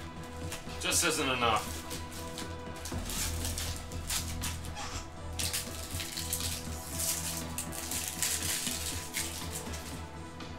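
Foil wrapper of a 2017 Bowman jumbo pack of baseball cards crinkling and rustling as it is torn open and handled, densest from about three seconds in, over quiet background music.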